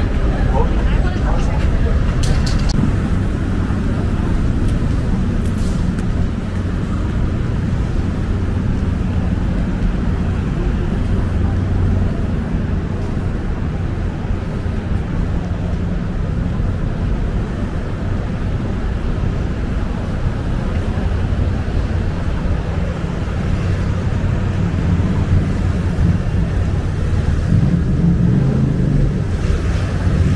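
City street traffic noise: a steady, low rumble of passing vehicles.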